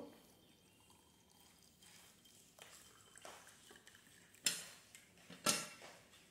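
Hot water poured faintly from a kettle into a glass mug, then two sharp knocks about a second apart near the end, as things are set down on the table.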